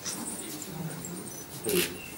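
Faint, indistinct voices in a quiet room, with a brief hissing noise shortly before the end.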